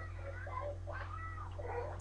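A few faint, high-pitched vocal sounds, one rising and falling about a second in, over a steady low hum.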